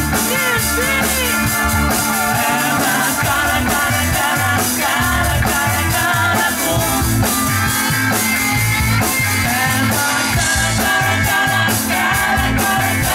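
A rock band playing live: electric guitars over a drum kit keeping a steady beat.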